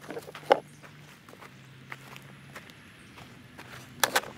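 Handling noises of squash picking: scattered knocks and rustles from a plastic harvest tub of yellow crookneck squash and steps on dry garden soil, with one sharp knock about half a second in. A faint steady low hum runs underneath.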